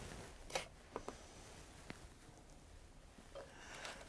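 Very quiet room tone with a few faint, short clicks, about half a second, one second and two seconds in.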